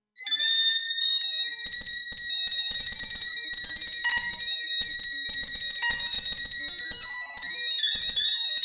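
Improvised electronic music cuts in abruptly: a piercing, sustained high tone with overtones, like an alarm. After about a second and a half, an irregular stuttering, crackling texture joins it.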